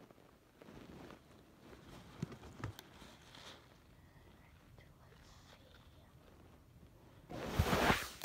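Faint, muffled handling noises with a few small taps as a doll is fitted with small crutches held on by rubber bands. Near the end comes a loud rustle as the phone is picked up and brushes against fabric.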